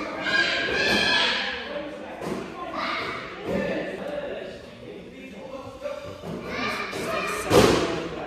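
Children's voices, then near the end a single loud thud: a child's strike landing on a foam kick paddle.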